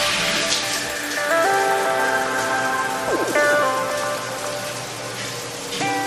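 Background music over a steady hiss of running water from a shower.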